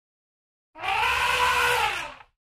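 Cartoon sound effect of an elephant trumpeting: one loud call that starts just under a second in and holds a steady, slightly arching pitch.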